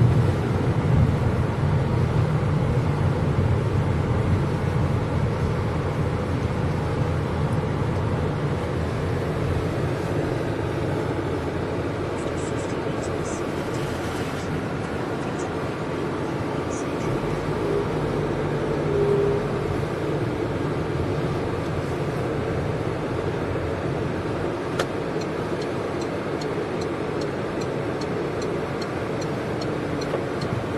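Steady low engine hum and road noise heard from inside a car cabin as the car moves slowly along a paved street.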